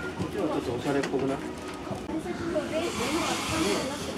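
Indistinct chatter of several people talking at once in a busy shop, with a brief hissing rustle near the end.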